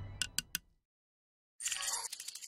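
Animated end-screen sound effects: a fading sound, then three quick sharp clicks in the first half second, and after a short gap a crackling rustle near the end.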